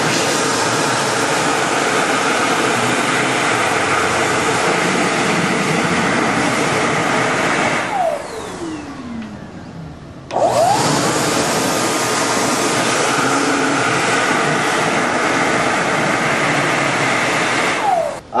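Dyson Airblade hand dryer running at full blast: a loud, steady rush of air with a high motor whine while hands are in the slot. About eight seconds in it winds down with a falling whine. Two seconds later it kicks back on with a quick rising whine and runs steadily again.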